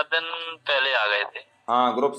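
Speech only: a man talking in Hindi, with a short pause near the end.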